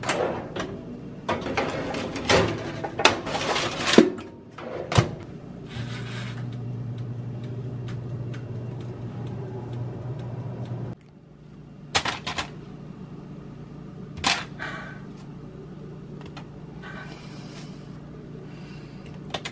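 A Cuisinart air fryer toaster oven being handled: a few seconds of clicks, knocks and rattles from its wire rack and door, then a steady low hum of the oven running that cuts off suddenly after about five seconds, with a couple of single knocks later.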